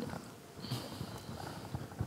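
A pause in studio talk: quiet room tone with faint small clicks and a soft rustle.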